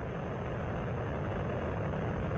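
Steady, low rumbling noise from Space Shuttle Columbia's two solid rocket boosters and three main engines firing together during the climb to orbit.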